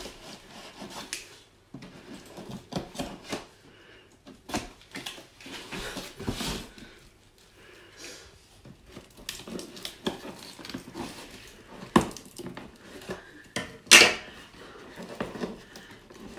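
Scissors snipping and scraping along the taped seams of a cardboard box, with irregular clicks and knocks as the box is handled. The loudest is a sharp click about two seconds before the end.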